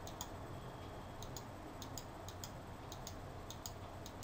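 Faint clicks of a computer mouse, coming in quick pairs about every half second to a second.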